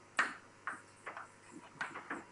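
Chalk on a blackboard as someone writes: five or six short, sharp taps and strokes at irregular intervals, the loudest about a fifth of a second in.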